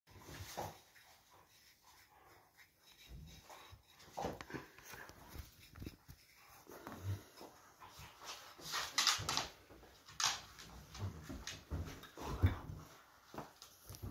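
Dogs playing together on a sofa: scuffling and short dog vocalisations in irregular bursts, loudest about nine seconds in and again near the end.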